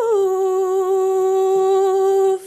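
A woman singing unaccompanied into a microphone, holding one long steady note after a slight waver as it begins.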